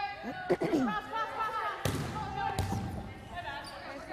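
Volleyball being struck and bouncing in a gym: a few sharp smacks, the loudest about two seconds in, under players calling out to each other, echoing in the large hall.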